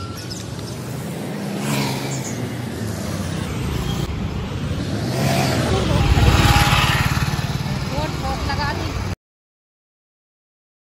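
Road traffic noise heard while moving along a street: passing vehicles rise and fade, loudest about six seconds in, with indistinct voices mixed in. The sound cuts off abruptly about nine seconds in.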